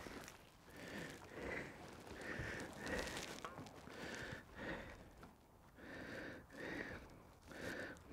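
A man breathing faintly and quickly through his nose, in a long run of short soft breaths.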